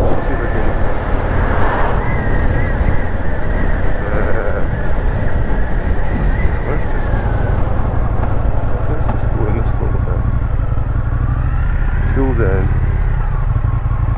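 Indian FTR1200's V-twin engine running as the motorcycle is ridden and slowed to turn off the road.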